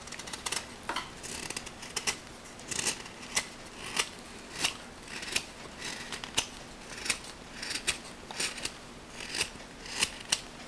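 Carving knife shaving thin curls off the edge of a pale wooden board: a steady series of short, crisp slicing cuts, about one or two a second.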